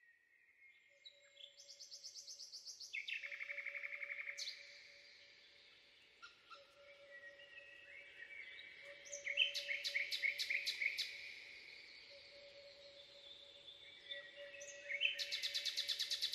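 Songbirds singing out of silence: overlapping high trills and quick chirps, loudest in a long trill about three to four seconds in and in a run of rapid chirps around ten seconds in. A faint, steady low tone holds underneath.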